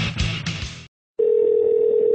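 Rock music that stops about a second in, followed after a short gap by a steady single-pitched telephone tone lasting about a second, heard over a phone line.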